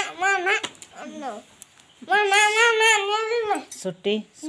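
A high-pitched, wavering vocal whine: a couple of short cries at the start, then one drawn-out cry about a second and a half long from about two seconds in.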